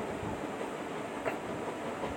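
Steady rumbling background noise, with a single short click a little past the middle.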